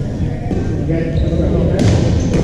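Pickleball paddles hitting the plastic ball in a large echoing gym, with a sharp hit near the end, over the steady chatter of players on the courts.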